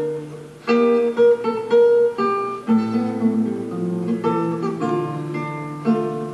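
Solo nylon-string classical guitar playing a march: plucked melody over bass notes, with crisp chord attacks. A chord rings and fades at the start, and the playing picks up again about two-thirds of a second in.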